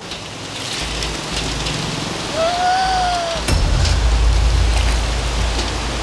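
Shallow stream water rushing and splashing, a steady rain-like hiss that grows louder. A short single-note tone sounds a little after two seconds in, and a deep rumble comes in from about halfway.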